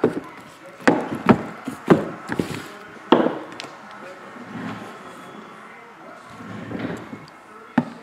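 Shrink-wrapped trading-card boxes being picked up and set down on a padded table: a few sharp knocks in the first three seconds and another near the end, with a quieter stretch between.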